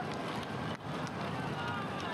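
Steady outdoor race ambience from the roadside broadcast feed: an even rushing noise, with a brief dip about three quarters of a second in.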